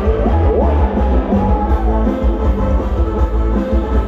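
Loud live band playing Thai ramwong dance music, with a heavy bass and drum beat under melodic lines that slide up and down in pitch.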